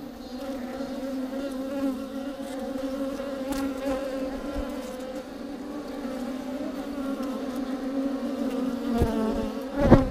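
Honeybees buzzing in and around a hollow tree-trunk hive, a steady hum. A short loud thump comes near the end.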